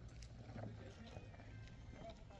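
Faint, indistinct voices of people talking in the distance over a low steady rumble.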